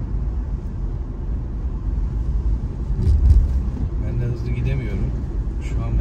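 Steady low engine and road rumble of a car heard from inside its cabin while driving, swelling louder for a moment about three seconds in.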